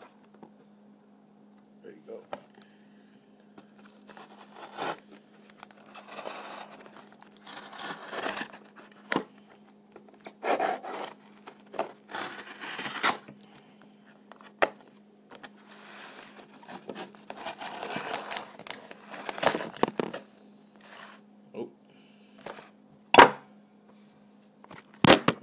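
A cardboard Priority Mail shipping box being handled and opened by hand: irregular scraping, rubbing and tearing of cardboard, with a few sharp knocks, one of them loud near the end, over a steady low hum.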